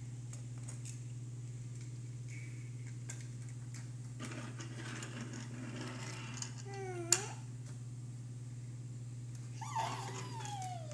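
Faint clicks and scratchy rolling of die-cast toy cars on a plastic playset and tabletop, with one sharp clack about seven seconds in, over a steady low hum. A toddler's short vocal sounds come just before the clack and again at the very end, the last one falling in pitch.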